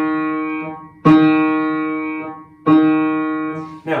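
The same middle-register note on an upright piano, struck about a second in and again near three seconds, over the fading tail of an earlier strike. Each strike is a felt hammer hitting the three strings tuned to that pitch, and each note dies away over about a second and a half.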